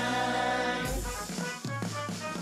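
J-pop idol song played at a live show. A chord is held through the first second, then the music breaks into shorter notes over low beat thumps.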